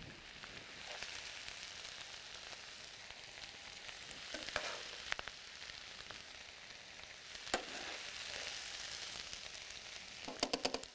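Fried cabbage giving off a steady, soft sizzle in a hot pan with the burner switched off. A few short clicks come from metal tongs against the pan and bowl as the cabbage is lifted out.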